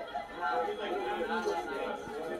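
Indistinct chatter: several voices talking over one another, no words clear enough to make out.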